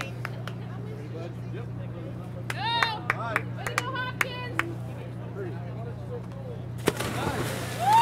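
Several people jumping together into icy lake water: a few high-pitched shouts, then a sudden loud splash of water about seven seconds in, with a shriek right after, over a steady low hum.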